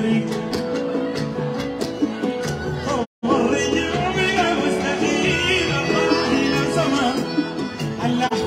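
Live Sudanese song: a male singer's amplified vocals over a keyboard-led band with a steady beat. The sound cuts out completely for an instant about three seconds in.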